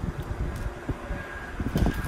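Wind buffeting the microphone outdoors: an irregular low rumble that swells near the end.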